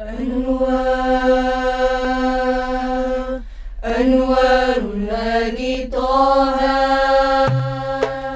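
A girls' vocal group singing an Arabic nasheed in unison. They hold one long note for about three seconds, break briefly, then sing a phrase that dips in pitch and climbs back up. A low steady note comes in just before the end.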